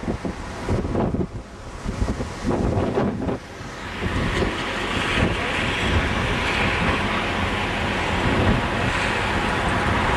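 City street traffic rumbling past, with wind buffeting the camcorder microphone. About four seconds in it turns into a steady, louder rush.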